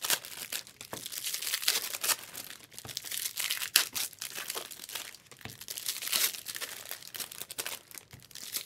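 Foil trading-card pack wrappers crinkling and tearing as packs are handled and opened, an irregular run of crackles and rips.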